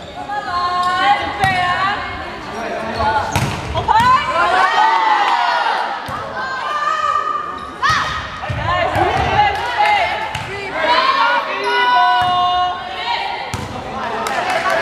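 Volleyball rally on an indoor court: the ball is struck several times, with a sharp hit about eight seconds in as a player spikes at the net. Girls' shouts and calls run throughout, with sneakers squeaking on the court floor.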